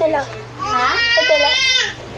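A young girl's voice making a drawn-out, high-pitched vocal sound rather than clear words, starting about half a second in.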